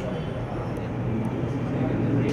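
A steady low hum with a noisy background, no single sound standing out.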